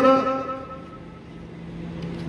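A man's amplified voice holds its last syllable through a loudspeaker and fades out. Then a motor vehicle engine runs steadily, slowly growing louder.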